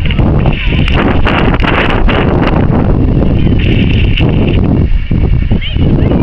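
Open-air youth football match: distant shouting of players and onlookers over a loud, uneven rumble of wind buffeting the camcorder microphone.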